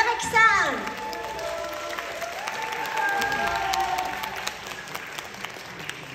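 Concert audience applauding as a song finishes, many hands clapping, with voices rising over the clapping in the first second.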